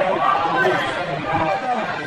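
Several people chattering at once in indistinct, overlapping conversation.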